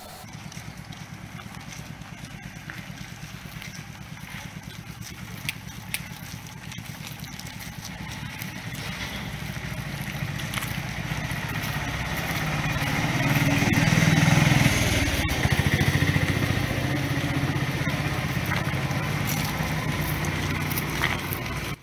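A vehicle engine running close by, growing louder until about two-thirds of the way through and then holding steady, with faint voices alongside.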